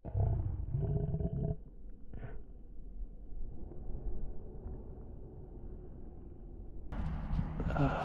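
Slowed-down, deepened audio: a low, drawn-out voice-like sound for about the first second and a half, then a low rumble, before normal-speed sound cuts back in near the end.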